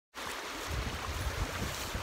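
Steady rushing noise of a creek's running water, with uneven low wind rumble on the microphone.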